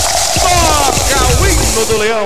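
A radio station's goal jingle: music with swooping, sliding voice or synth pitches, over the steady noise of a stadium crowd.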